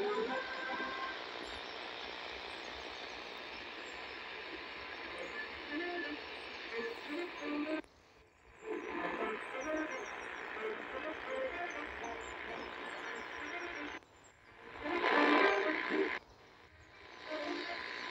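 Sihuadon R-108 portable radio tuned to the top of the medium-wave band, giving a steady hiss of static with a weak, distant station faintly coming through. The audio cuts out briefly a few times as the radio is stepped between frequencies.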